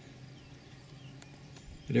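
Quiet outdoor ambience with a few faint bird chirps over a faint steady low hum; a man's voice starts near the end.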